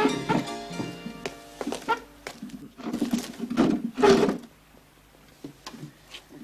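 Music ending about a second in, then wooden chairs knocking and scraping on the floor as people sit down at a table.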